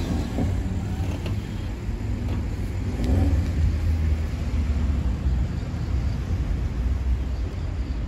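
BMW 440i M Coupé's 3.0-litre turbocharged inline-six running at idle just after being started, a steady low rumble that swells briefly about three seconds in.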